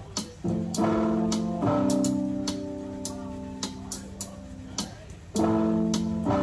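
Music played back from an Akai GX-635D reel-to-reel tape deck: ringing chords that come in suddenly and are held, one long chord through the middle and a new, louder one near the end, with sharp ticks running over them.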